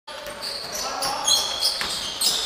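Basketball game in a large gym: sneakers squeaking on the hardwood court, a ball bouncing, and players' voices.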